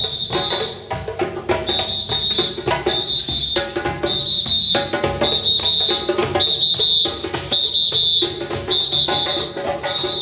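Hand drums are played in a dense, driving rhythm. A high whistle is blown over them in short blasts, about one a second.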